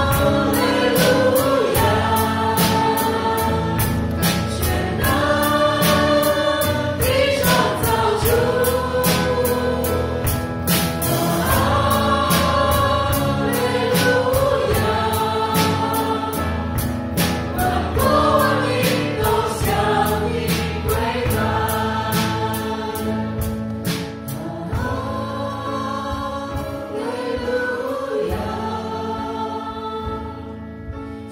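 A live church worship band: several men and women singing a worship song together, backed by electric guitar, keyboard and a drum kit that keeps a steady beat. The sound eases off a little near the end.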